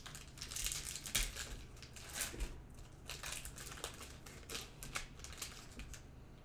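Trading cards and their foil pack wrapper rustling and crinkling as hands pull the cards out and slide through them. It comes as a quick, irregular string of short scrapes and crackles.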